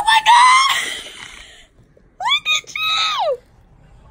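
Two loud, high-pitched excited squeals of a voice. The first lasts about a second and a half, and the second starts about two seconds in and slides down in pitch as it ends.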